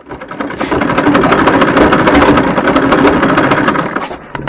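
Black-and-gold sewing machine stitching cloth: a rapid, steady mechanical clatter of the needle and mechanism that builds up in the first half second and eases off near the end.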